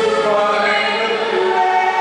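A man and a woman singing a slow ballad as a duet through handheld microphones and a stage sound system, their voices together on long held notes.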